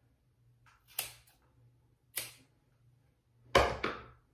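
Scissors cutting: three short, sharp snips a little over a second apart. The last snip is the loudest and carries a dull thump.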